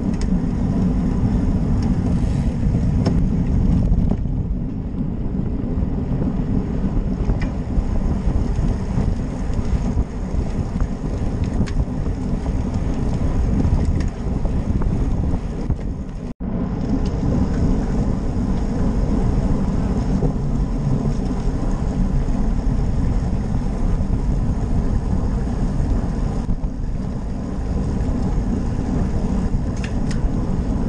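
Wind buffeting the microphone of a bike-mounted action camera, a steady, bass-heavy rumble mixed with road noise from a road bike riding at speed. A momentary dropout a little past halfway breaks it before the same rumble resumes.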